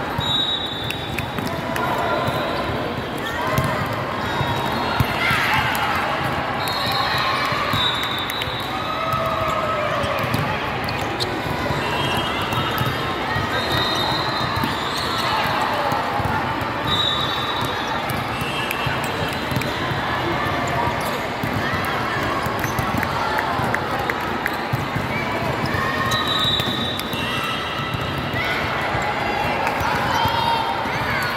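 Indoor volleyball rally: the ball being hit, with a sharp smack about five seconds in, and short high squeaks of sneakers on the court. A steady babble of players' and spectators' voices fills the big hall throughout.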